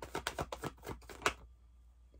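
A deck of tarot cards being shuffled by hand: a quick run of card flicks, about eight a second, that stops about a second and a half in.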